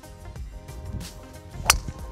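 A Callaway Epic Speed driver strikes a golf ball once, a single sharp crack of impact near the end, over background music.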